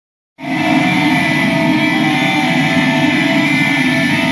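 Loud live rock music with guitar through a concert PA, heard close to the stage; it cuts in abruptly about half a second in and holds at a steady level.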